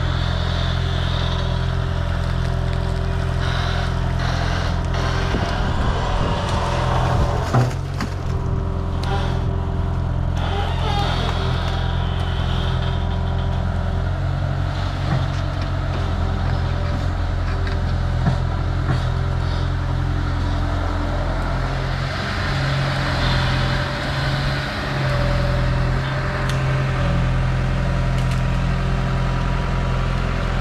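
Sumitomo S265F2 long-reach excavator's diesel engine running steadily under working load as the boom swings and the bucket is set down. There is a single sharp knock about seven and a half seconds in, and the engine note shifts briefly a little past the middle.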